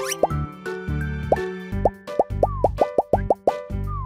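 A string of cartoon 'plop' sound effects, short pops that each drop quickly in pitch, coming fast in a burst in the second half, over bouncy children's background music.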